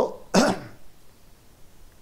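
A man clears his throat once: a short, rough burst about half a second in, right after he says "so".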